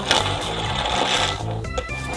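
Heart-shaped fidget spinner whirring with a rapid rattling buzz as it spins flat on a tabletop, dying away about a second and a half in; it is a spinner that doesn't spin for long. Background music plays under it.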